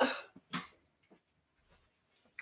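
A woman's short grunt, 'ugh', as she lifts something, then a second brief breathy sound about half a second later.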